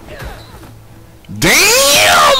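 A man's loud, drawn-out yell that bursts in about one and a half seconds in, its pitch rising and then falling. It comes over faint background audio from the show.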